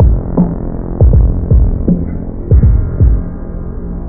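Boom bap hip-hop instrumental with a low-pass filter on it, so only the deep kick drum, bass and a muffled sample come through while the bright drums are cut away. The full, bright beat comes back at the very end.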